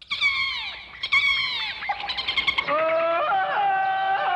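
Jungle-themed TV break jingle. It opens with two falling, animal-like calls about a second apart, then a quick run of short chirps, then sustained music tones that slide between notes.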